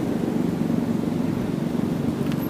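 Steady hum of a car engine running in road traffic, with no change in pitch.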